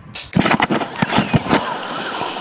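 Water slapping and knocking against a hand-held camera held at the surface of the sea: several sharp knocks and splashes in the first second and a half, then a steady rush of water and wind noise.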